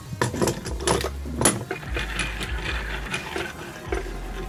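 Black plastic 3D-printer filament spool being fitted onto a homemade ball-bearing spool holder and handled, giving irregular clicks and knocks of plastic against metal. A light rattle runs through the second half.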